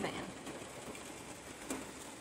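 Faint, steady background hiss in a pause between sentences, with one short click near the end.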